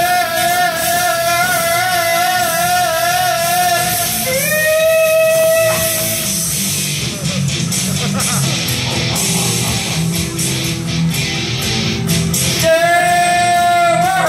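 Loud rock music with a singing voice: long held notes with vibrato in the first few seconds and again near the end, with a guitar-led backing stretch in between.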